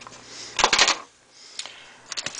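A quick burst of clicks and rattles about half a second in, then a single faint click: knives being handled and set down among other gear on plastic sheeting.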